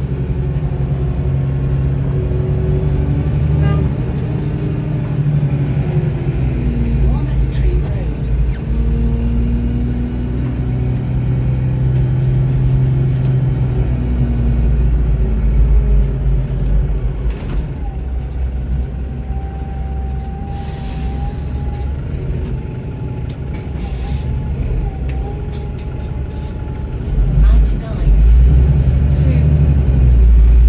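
Bus engine and drivetrain heard from inside the passenger saloon of a moving bus: a deep, steady rumble that swells again near the end. A thin, wavering whine runs through the second half.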